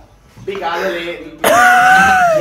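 Young men's voices with no clear words: indistinct vocal sounds, then a drawn-out, pitched vocal exclamation starting about one and a half seconds in.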